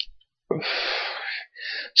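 A man's audible breath, a long noisy draw of about a second, then a shorter, higher-pitched breath, taken in a pause between sentences. A faint click sounds at the very start.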